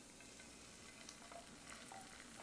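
Faint sizzling with light, scattered crackles from a skillet as thick tomato pasta sauce is poured onto minced garlic cooking in olive oil over medium-low heat.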